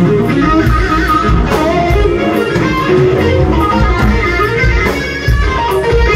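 Live rock band playing loudly: electric guitar notes over a driving drum beat and low bass.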